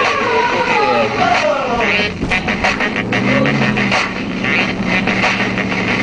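BMW E36 engine heard from inside the cabin while drifting on snow, its revs rising and falling, under loud music from the car radio with a regular beat.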